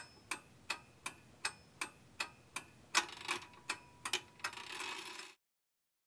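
Regular, clock-like ticking sound effect, nearly three ticks a second. From about halfway a hissing layer and a faint steady tone join it. Everything cuts off suddenly just over five seconds in.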